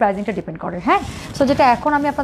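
A woman talking, in short phrases with brief gaps.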